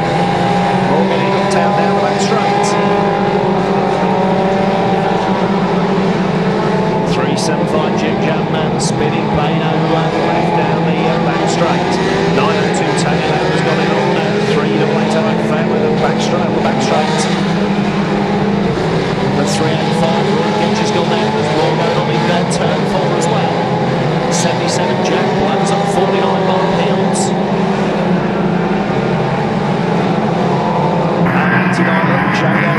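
Engines of a field of banger racing cars running and revving together, pitches rising and falling as they race, with frequent short sharp knocks and bangs from car-to-car contact.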